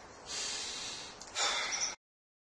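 A man taking a deep breath, in and then out, the breath out louder; the sound cuts off suddenly just before the end.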